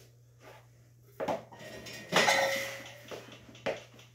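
Loaded barbell and weight plates clanking against the steel power rack as the lifter settles under the bar for a bench press: a knock about a second in, one loud ringing metal clank about two seconds in, and a lighter knock near the end.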